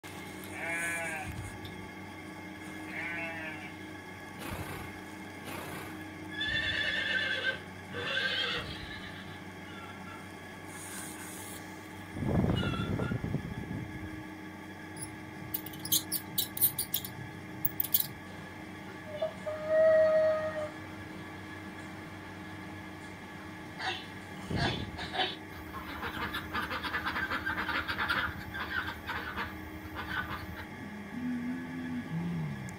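A sheep bleating twice with a wavering, quavering pitch in the first few seconds, followed by a series of other short animal calls, a louder low call about twelve seconds in, and a burst of rapid clicking about halfway through.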